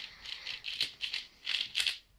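Plastic 4x4 puzzle cube having its layers turned in quick succession, about seven clicking, rattling turns in two seconds, as a move sequence (an algorithm) is executed on it.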